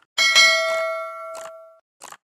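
Notification-bell sound effect: a bright bell ding that rings and fades over about a second and a half, with a short click partway through.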